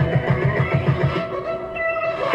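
Music playing through a loudspeaker driven by an AB2000 amplifier module on test, its burnt input transformer replaced by an adapted one; a pulsing bass line runs under the melody.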